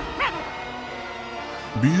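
A single short, high yip from a small cartoon dog about a quarter second in, over a background music bed.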